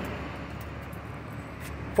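Steady outdoor street background noise, a low even rumble of road traffic, with no single event standing out.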